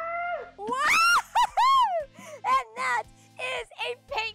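Excited high-pitched whoops and shrieks, rising and falling in pitch, then breaking into laughter, over background music.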